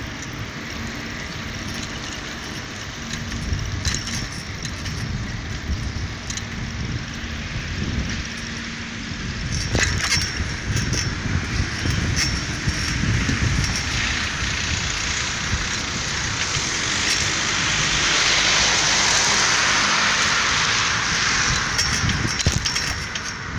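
Street ambience heard from a moving handheld camera: a low, uneven rumble of wind and handling on the microphone, with road traffic noise that swells over the second half.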